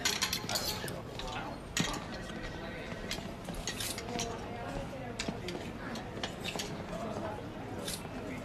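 Clothes hangers clicking and scraping on a clothes rail as garments are pushed along and one is taken down, with several sharp clicks in the first second and a few more later.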